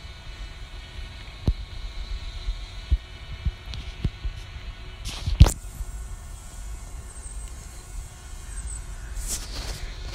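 Low rumble on the microphone with a faint steady hum, broken by a few short knocks, the loudest about halfway through.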